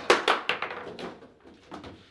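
Table football play: the ball and rod-mounted player figures clacking in a quick flurry of sharp knocks in the first second, then a few scattered clicks.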